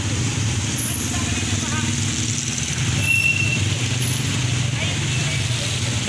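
Motorcycle engines running at low speed in a slow queue of traffic, a steady low hum.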